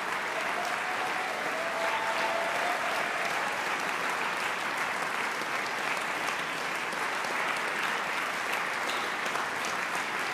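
Concert audience applauding, steady dense clapping that holds throughout.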